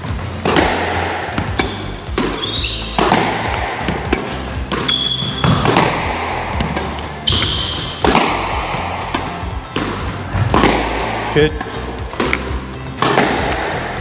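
Squash ball struck by rackets and hitting the court walls in a rally, a series of sharp, hollow impacts about once a second, over background music.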